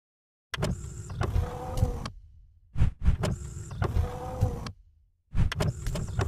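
Mechanical sound effect for an animated logo of sliding, turning blocks: three similar passes, each opening with sharp clicks over a low rumble and carrying a steady whine, with short silent gaps between them.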